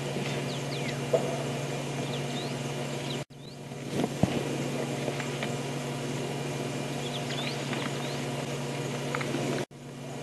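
Game-drive vehicle's engine idling with a steady low hum while small birds chirp with short whistles. There is a faint knock about four seconds in, and the sound cuts out briefly twice.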